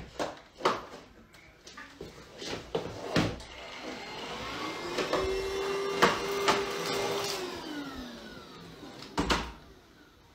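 Cordless stick vacuum cleaner motor spinning up, running steadily for about two seconds, then winding down. Sharp knocks and clicks of the vacuum being handled come before, during and near the end.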